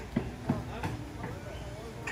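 Indistinct speech: a few short, muffled syllables that are not clear enough to make out words.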